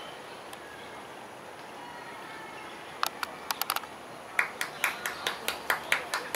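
Steady outdoor background hiss, then from about three seconds in a series of sharp claps that settles into an even rhythm of about four a second.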